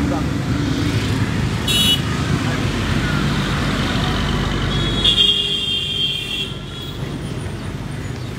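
Road traffic noise with vehicle horns: a short high horn toot just under two seconds in, and a longer, louder horn blast from about five to six and a half seconds. People's voices can be heard in the background.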